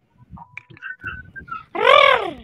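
A child's voice over a video call sounding out the letter R as one drawn-out "rrr", rising and falling in pitch, starting near the end. Before it there are only faint scattered sounds from the call.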